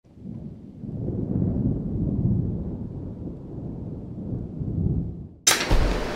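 A low rolling rumble like thunder, swelling and fading for about five seconds. It cuts off sharply, and a sudden bright burst of noise follows near the end.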